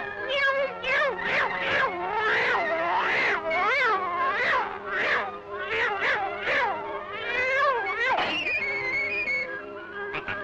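Cartoon cat yowling in tune: a string of rising-and-falling meows, about two a second, played like a melody over a low steady backing note. Near the end it gives way to higher, wavering held notes.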